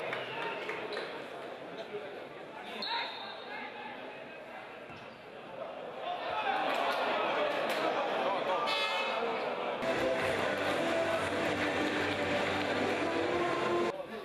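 Live football match sound in a sparsely filled stadium: shouting voices from the pitch and stands, with a few sharp thuds of the ball being kicked. It gets louder about six seconds in, and held calls carry on from the stands.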